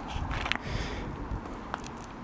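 Quiet outdoor background noise with a couple of faint clicks.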